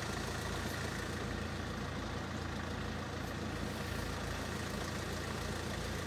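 Road vehicle engine idling steadily: an even low hum.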